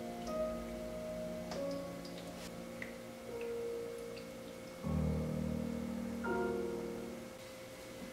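Soft background music: slow, held keyboard notes that change every second or two, with a few faint ticks.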